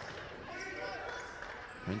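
Court sound from a live basketball game: a ball bouncing on the hardwood floor and faint voices of players, with little crowd noise.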